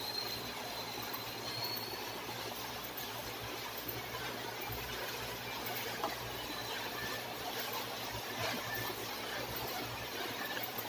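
Quiet room tone: a steady low hum with a faint high-pitched whine during the first two seconds.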